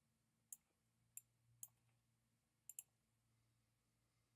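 Five faint, sharp clicks over near silence, the last two close together, from clicking at the computer while moving on to the next question.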